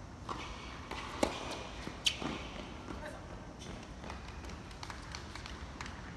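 Two sharp tennis racket hits on the ball, the first about a second in and the second under a second later.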